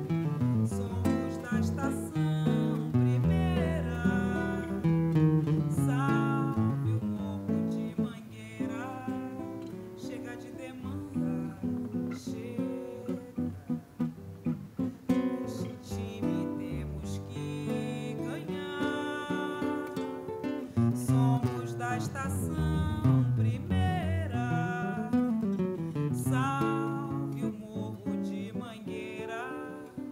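Solo acoustic guitar playing a samba intro, with a plucked melody over moving low bass notes.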